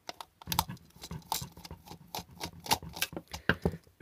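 Irregular light clicks and taps from a small screwdriver working screws inside a plastic lamp housing, mixed with handling of the plastic casing.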